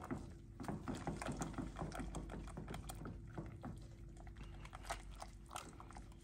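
Red silicone whisk stirring thick hot chocolate in a stainless steel saucepan: faint, irregular light clicks and swishes of the wires through the liquid and against the pan. A faint steady hum sits underneath.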